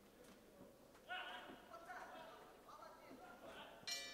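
Faint voices calling out across a nearly quiet boxing hall, then near the end a bell strikes and rings, sounding the end of the round.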